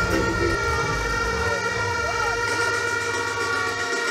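Stage sound system playing a held, siren-like electronic chord over a low bass that cuts off just before the end, with a voice over it between songs.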